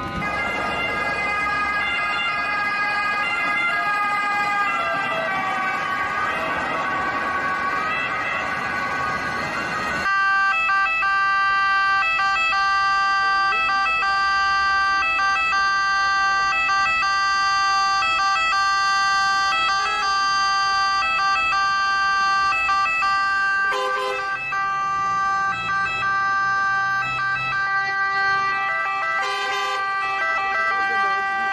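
Ambulance siren sounding continuously in a steady, regularly repeating pattern through street traffic. For the first ten seconds it is mixed with heavy traffic noise; after that it stands out clearly.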